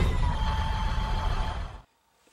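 Intro sound effect for a logo title card: a rushing whoosh over a deep rumble with a faint steady high tone, dying away and cutting off just before the end.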